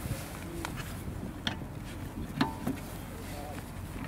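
Lug wrench clicking against the spare wheel's lug bolts as they are tightened: a few sharp metallic clicks, one with a brief ring, over a steady low background hum.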